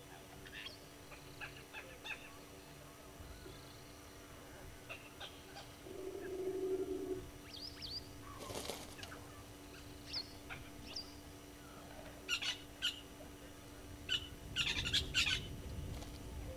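Wild birds calling: scattered short, high chirps and calls from several birds, with a lower call held for about a second near the middle and a busier flurry of calls near the end. A faint steady hum lies underneath.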